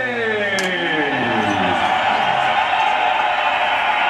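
An announcer's voice with long, drawn-out words sliding down in pitch over the first two seconds, then a steady wash of background din.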